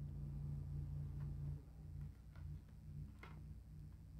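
A few faint taps as the stiff cardboard pages of a board book are handled and turned, over a low steady hum.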